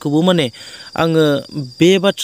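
A man talking in short phrases, with a cricket's steady high-pitched trill in the background.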